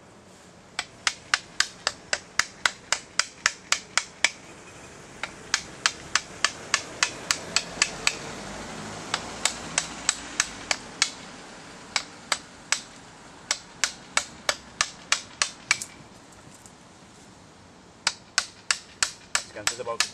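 Hammer striking a chisel into a log: sharp taps about three a second, in runs broken by short pauses, as bark and wood are chipped away by hand.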